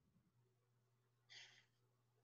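Near silence: room tone with a faint low hum, and one brief, faint breath about a second and a half in.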